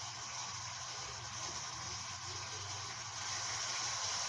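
Steady background hiss with a faint low hum beneath it, growing slightly louder near the end.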